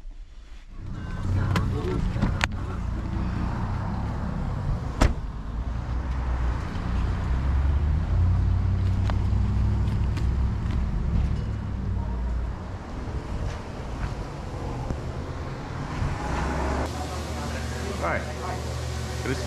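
Low, steady outdoor rumble of street noise on a helmet-mounted camera's microphone, starting about a second in, with a few sharp clicks early on and about five seconds in.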